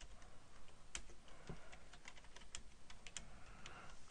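Computer keyboard typing: a run of quick, irregular keystrokes, fairly faint.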